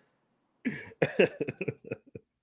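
A person's short vocal bursts in quick succession, starting about half a second in after a brief silence.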